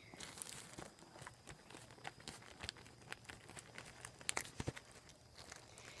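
Plastic zip-top bag crinkling faintly as it is pressed flat and sealed, with a few small clicks.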